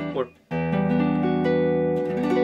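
Electric guitar playing a major seventh arpeggio from the minor third of a minor chord, giving a minor ninth sound. It starts about half a second in, with the notes entering one after another and ringing on into each other.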